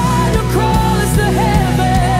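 Live worship band playing at a steady beat, with bass guitar, keys and drums, and a sung melody of long held notes that slide between pitches over the band.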